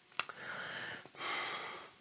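A short click, then two audible breaths through the mouth, one after the other, from a person savouring a spoonful of freshly blended herb sauce.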